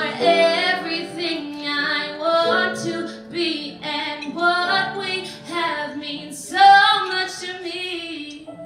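A woman singing solo with piano accompaniment, holding notes with vibrato.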